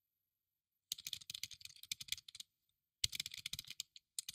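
Typing on a computer keyboard: fast keystrokes in two runs. The first run starts about a second in, and the second follows a short pause.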